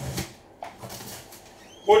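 A sealed cardboard case being shifted and set down on a padded mat: a brief soft knock, then a small click.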